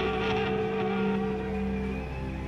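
A live band's closing chord, held on keyboard and other instruments as a steady sustained tone, slowly fading at the end of the song.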